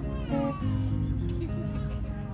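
Acoustic guitar played live, with a brief high voice-like cry that slides steeply down in pitch a quarter of a second in.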